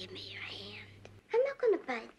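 Speech only: film dialogue from a woman's voice, soft and breathy for about the first second, then plainly spoken.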